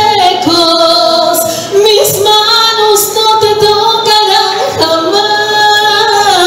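A woman singing a slow, romantic ballad into a handheld microphone with no accompaniment, holding long notes with vibrato and sliding between them in three phrases.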